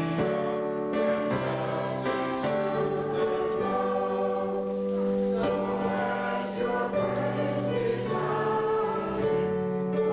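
A group of voices singing a slow hymn together, the notes long and held and changing about once a second.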